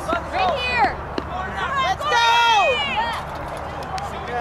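Several people shouting and calling out, their voices overlapping in drawn-out calls, with a couple of brief knocks about one and two seconds in.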